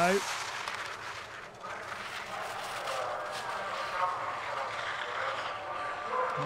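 Skis carving and scraping over rutted snow on a giant slalom course, a steady hiss, with distant spectators' voices and cheering underneath.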